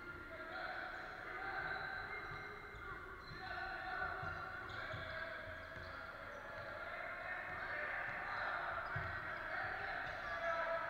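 A basketball bouncing on a hardwood court, a few dull thuds, under echoing player voices in a large gym hall.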